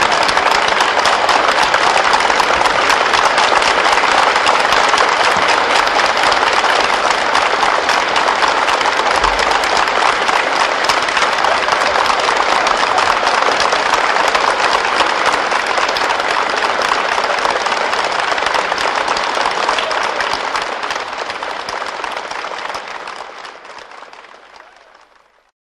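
Theatre audience applauding a live opera performance at its close: dense, steady clapping that fades out over the last few seconds.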